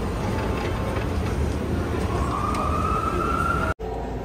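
Steady low rumble and din of a crowded venue lobby, heard while riding an escalator. A tone rises slowly in pitch through the second half, and the sound cuts off abruptly just before the end.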